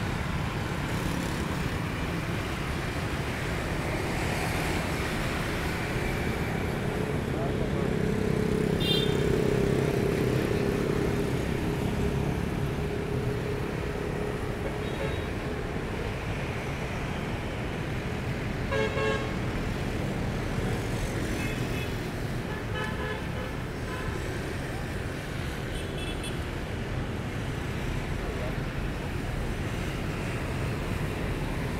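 City traffic noise with motorbikes and cars going by; one vehicle passes louder about nine seconds in. Several short vehicle horn toots sound over it, the clearest about nineteen seconds in and a few more later on.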